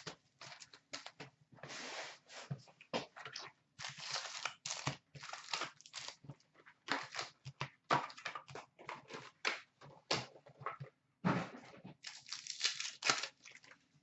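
Wrapping, cardboard and foil card packs of a 2015-16 Fleer Showcase hockey box being torn open and handled: irregular crinkling and rustling with short pauses.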